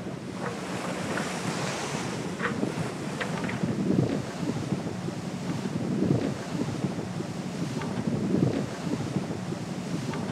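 Wind and rushing water on a racing yacht under way at sea, surging louder about every two seconds over a steady low hum.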